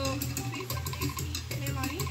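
Tahitian drum music from a portable loudspeaker: a fast, even beat of drum strokes.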